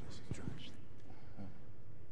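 Brief quiet murmured speech with hissy 's' sounds that dies away before a second in, leaving a steady low hum of the room's sound system.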